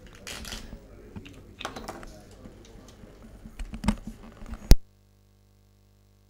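Scattered sharp clicks and knocks of play at a billiard table, with faint murmuring voices. Near the end comes a single very loud sharp click, and then the sound cuts off abruptly to dead silence.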